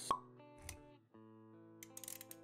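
Intro-animation sound effects over music: a sharp pop just after the start, a short low thud about two-thirds of a second in, then sustained synth-like chords with light clicks after a brief drop-out.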